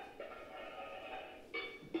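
Improvised junk chimes: pots, pans and broken glass struck with a stick, several strikes each ringing on and fading, imitating Big Ben's bongs for a time signal.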